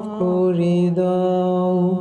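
Male voice singing a Bengali Islamic hamd, holding one long steady note that steps slightly down in pitch just after it begins.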